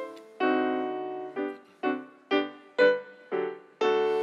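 Digital stage piano playing a solo passage. It holds one chord, then strikes a series of separate notes or chords about two a second, each dying away.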